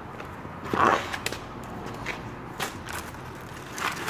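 Handling noise from a homemade stabbing tool on a concrete floor: a scuffing scrape about a second in, then a few sharp knocks.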